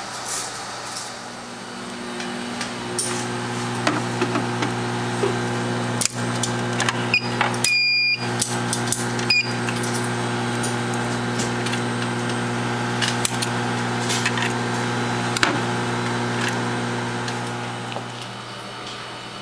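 Steady electrical hum of running laboratory bench equipment, with scattered small clicks of handling. A few short electronic beeps come a little before the middle, one of them held slightly longer.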